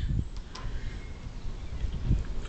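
Quiet outdoor background with a low rumble, broken by two short, faint high ticks, one at the start and one about half a second in.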